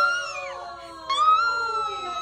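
Several people's voices calling out long, drawn-out exclamations together: one fades in the first half second, and a second held cry starts about a second in.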